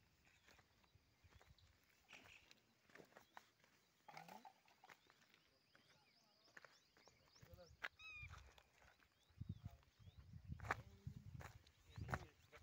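Near silence: faint open-air ambience with scattered light clicks and a few faint distant calls, including a short run of chirps about eight seconds in.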